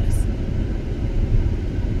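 Steady low rumble of road and engine noise inside the cabin of a car moving at highway speed.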